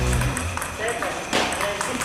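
Table tennis rally: a celluloid-type ball struck sharply with a paddle once, about one and a half seconds in. Background music drops out shortly after the start.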